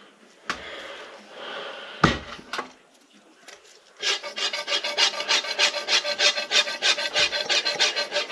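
A few light handling clicks, then from about halfway a fast rhythmic rubbing or scraping, about seven or eight strokes a second, as a motorcycle fork tube is worked by hand.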